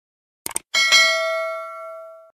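Subscribe-animation sound effect: a quick double mouse click about half a second in, then a bell chime struck twice in quick succession that rings on and slowly fades.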